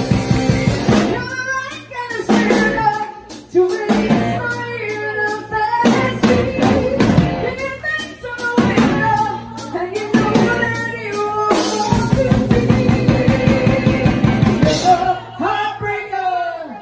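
Live rock band playing loud: a woman singing over electric guitar and a drum kit. A fast driving riff fills the opening second and returns about twelve seconds in, and sung phrases with drum hits between them fill the middle.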